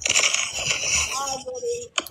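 A woman's voice: a breathy hiss for about the first second, then a short held vocal sound.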